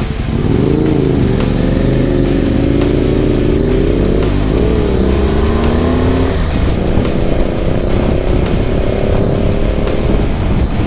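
BMW R 1200 GSA boxer-twin motorcycle engine pulling through the gears, its pitch rising and dropping back at each change, with a long steady climb in the last few seconds, over a low rush of wind and road noise.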